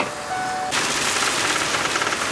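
A steady high whine with a short break, then, after an abrupt cut about two-thirds of a second in, the loud even rush of a converted school bus's engine and road noise heard from inside the cab while driving on a snowy freeway.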